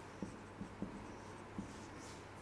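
Marker pen writing on a whiteboard: faint scratching of the tip with a few light taps as the letters are formed.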